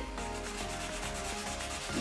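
A small piece of amber rubbed back and forth by hand on fine-grit sandpaper, a steady scratchy sanding sound.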